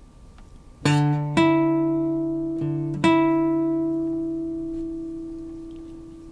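Acoustic guitar: three single notes picked over about two seconds, sounding the major sixth from D up to B, then left ringing and slowly fading.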